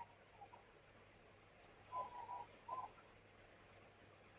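Near silence: room tone, with a faint short tonal call about two seconds in and a second one shortly after.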